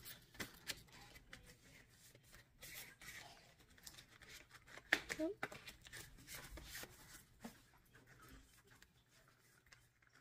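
Faint rustling and crinkling of paper banknotes and a paper envelope being handled and slid into a clear plastic binder pocket, with small scattered clicks and one sharper crinkle about five seconds in.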